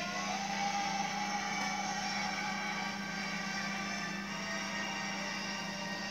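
Film soundtrack playing through a TV's speakers: a steady, sustained hum of layered held tones, one of them sliding slightly upward near the start.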